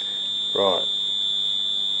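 Electric buzzer of a distributor timing fixture sounding one steady high-pitched tone, on because the contact-breaker points of the Lucas four-lobe distributor have reached their break point on the degree scale.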